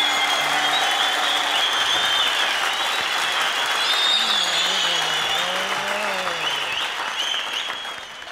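Studio audience and coaches applauding and cheering at the end of a song, the applause thinning out near the end.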